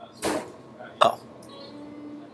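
A person's voice: a short puff of breath, then a quick exclaimed 'oh' about a second in.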